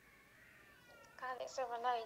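A high-pitched voice coming through a mobile phone's loudspeaker held to the microphone. It starts a little over a second in with a drawn-out, wavering call, after faint line noise with a few short falling tones.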